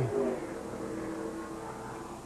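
Stock car V8 engines in the broadcast's track audio, a steady drone under the commentary gap.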